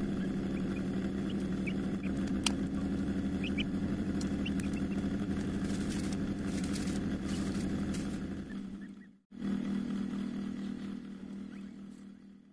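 A steady low mechanical hum, with a few faint, short high peeps in the first few seconds from a peafowl chick hatching out of its egg. There is a sharp click a little over two seconds in. The sound cuts out briefly near the end and comes back.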